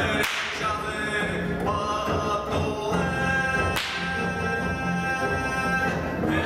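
A leather whip cracking sharply twice, once right at the start and again about four seconds in, over Khakas folk music with singing.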